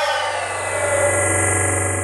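Electronic logo sting: a swelling whoosh with several tones sliding down in pitch over a steady low hum and a high hiss.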